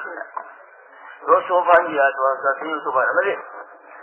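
A man speaking in a lecture. His voice is thin and narrow like an old radio or cassette recording, and comes in after a pause of about a second.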